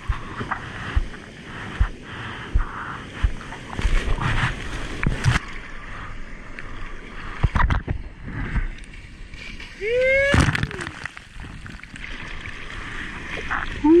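Seawater splashing, sloshing and gurgling around a GoPro held at the surface in the surf, with uneven choppy noise and many small slaps of water against the housing. About ten seconds in, a short whooping call rises and falls in pitch.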